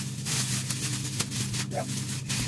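Thin clear plastic processing cap crinkling and rustling as it is stretched over bleached hair and pulled into place, with a few sharper crackles.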